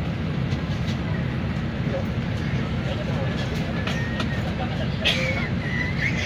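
Indistinct voices of a small group of people talking over a steady low rumble, with a brief high-pitched squeal about five seconds in.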